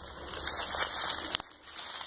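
Dry grass and brush crackling and rustling as someone pushes through it, with one sharp click about a second and a half in.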